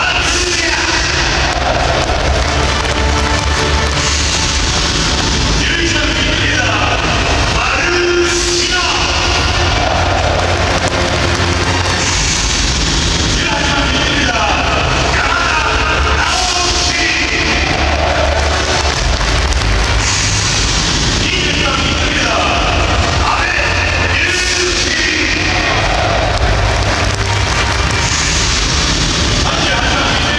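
Stadium PA music for a starting-lineup announcement, with a boom and sweep about every four seconds as each player is introduced, over a large crowd of supporters voicing along.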